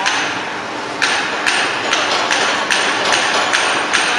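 Bread production line machinery running with a steady mechanical noise. From about a second in it knocks sharply and regularly, about two and a half times a second.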